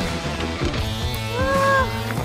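Background music with a steady low bass line. A short, high-pitched arching call sounds over it about a second and a half in.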